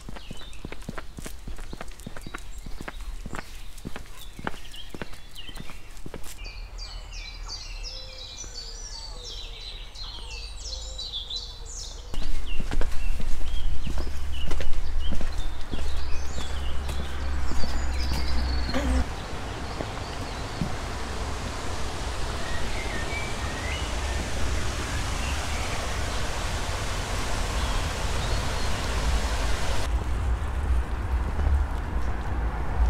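Footsteps walking at a steady pace on a paved lane, with birds singing in the middle stretch. About twelve seconds in, a sudden louder low rumble takes over, which then settles into a steady outdoor rush of wind and road noise.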